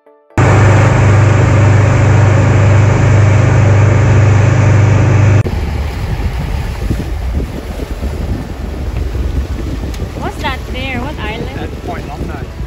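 Motorboat running at speed: a loud, steady engine drone with wind and water noise on the microphone starts suddenly about half a second in. About five seconds in it cuts abruptly to a quieter, rougher rumble of motor, water and wind buffeting.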